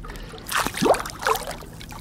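Water splashing and gurgling at the side of a boat as a bass is let go from the hand and kicks away. The burst of splashing comes about half a second in and lasts about a second.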